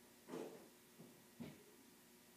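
Near silence: room tone, broken by two faint short sounds, one about a third of a second in and a sharper one about a second and a half in.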